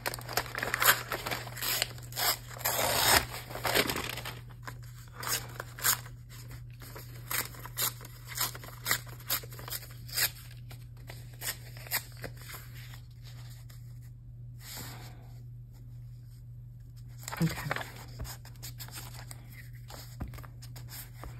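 Paper envelope being torn by hand: a run of tearing and rustling in the first few seconds, then scattered shorter rips and paper rustles that thin out before a quieter stretch.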